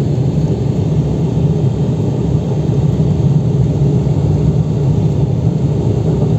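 Steady low rumble of road and engine noise from a moving car.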